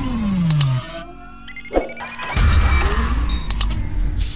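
Sound effects for an animated subscribe button: a falling whoosh that fades out within the first second, sharp mouse-click ticks, and a louder noisy swell from about halfway in.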